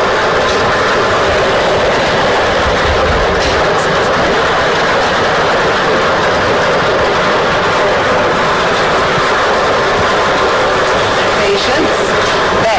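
Lottery draw machine mixing its numbered balls: a steady, dense clatter of balls tumbling against one another and the chamber walls.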